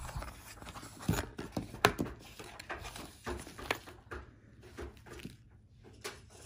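Handling of a cardboard jewelry box: rustling and scraping as the lid is lifted off, with a few sharp taps in the first two seconds, growing quieter toward the end.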